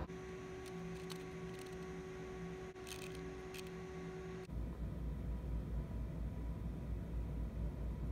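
Steady hum of lab equipment with a few light plastic clicks from a hand-held micropipette. About halfway through, the sound changes abruptly to a louder low rumble.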